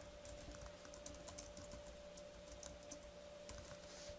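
Faint typing on a computer keyboard: a quick, irregular run of keystroke clicks, over a faint steady hum.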